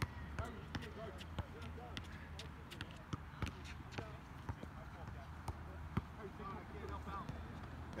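Basketball bouncing on an outdoor hard court, a run of sharp, irregularly spaced thuds, with players' voices faint in the background.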